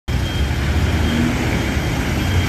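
Engine of a small city minibus running as it pulls away along a street, a steady low hum over street traffic noise.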